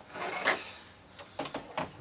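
Hands handling a small plastic LEGO model: a short rubbing scrape about half a second in, then a few light clicks of plastic bricks against the table near the end.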